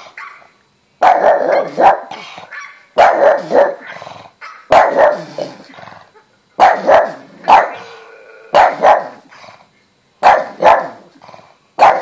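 A pug barking loudly in repeated bursts of two or three barks, a fresh burst roughly every one and a half to two seconds.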